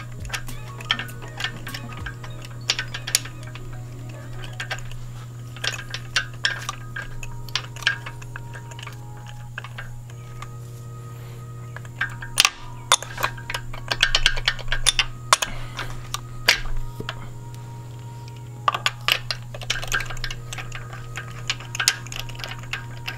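Background music over a steady low hum, with irregular metallic clicks and clinks from a ratchet and socket extension turning spark plugs into the cylinder head by hand. The clicks come in thicker clusters about halfway through and again near the end.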